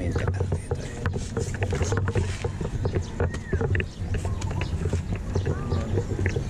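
Indistinct voices over a steady low rumble, with scattered clicks and a few short chirps.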